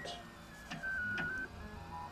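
Colido 3.0 3D printer's stepper motors whining as the print head moves while printing: a steady high tone that steps down slightly in pitch partway through, with a couple of faint clicks.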